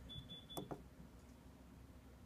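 Autotrol 700 Series water softener controller giving a short, high-pitched electronic beep, about half a second long, as its regenerate button is pressed, followed by two faint clicks. The beep acknowledges the keypress that sets a delayed regeneration.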